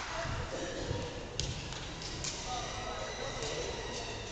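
Indistinct chatter of spectators echoing around a large gymnasium hall, with a couple of sharp knocks, the clearest about a third of the way in.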